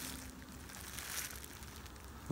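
Faint crinkling of plastic bubble wrap as a small box is handled in it.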